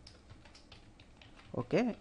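Typing on a computer keyboard: a run of quiet, irregular keystrokes, followed near the end by a man saying "okay".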